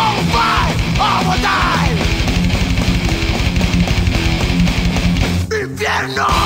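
Thrash metal: a distorted Jackson electric guitar played live over the band's recording of drums and guitars. A lead line swoops up and down in pitch through the first two seconds, and the band briefly thins out just before the end.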